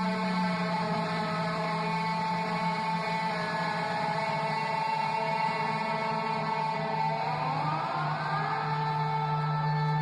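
Live electric guitar playing a sustained, effect-laden drone of held notes with no drums, one line sliding up in pitch about seven seconds in.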